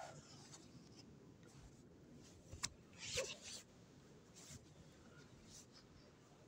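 Near silence broken by a few brief, faint rustles and one sharp click about two and a half seconds in: a phone being handled and rubbing against clothing.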